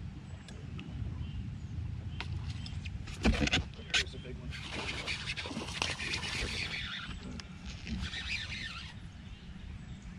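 A bass hitting a topwater soft-plastic frog and being hooked: sharp knocks about three to four seconds in at the hookset, then the hooked fish splashing and thrashing at the surface for a few seconds, with a second bout of splashing near the end.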